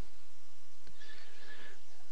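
Steady low electrical hum and hiss of the recording's background noise, with a faint click about a second in and a faint, brief high whine just after it.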